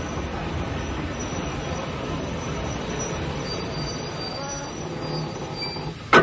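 Railway train running: a steady rumble of rolling wheels, with faint thin high squeals of the wheels on the rails, more of them from about halfway through.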